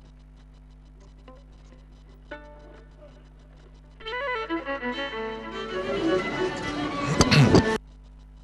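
Music led by a violin cuts in loud about halfway through over a faint steady hum, then breaks off suddenly just before the end. The on-and-off feed fits the broadcaster's account of sound problems from a transmission cable that was trodden on and broken.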